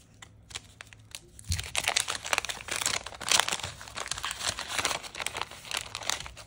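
A wax-paper trading-card pack being torn open and crinkled by hand. The crackling starts about a second and a half in and carries on busily as the wrapper is pulled apart.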